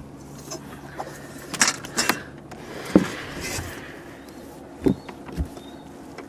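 Scattered light knocks and clatter in a small fishing boat, about five separate hits, with a brief rustle near the middle and a faint steady low hum underneath.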